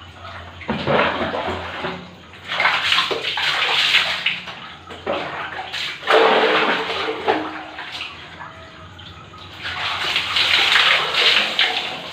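Water poured from a plastic dipper splashing over a person and onto the floor, in about four pours of a second or two each.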